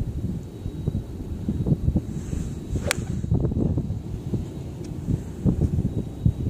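Golf iron swung through with a brief swish, ending in one sharp crack as it strikes the ball off the turf a little before halfway. Low wind rumble on the microphone runs underneath.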